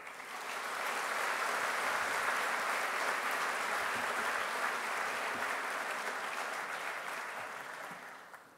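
A large audience applauding. The clapping swells over the first second, holds steady, then dies away near the end.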